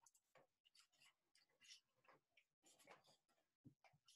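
Near silence: only faint, scattered rustles and scuffs, with brief dropouts where the audio cuts out.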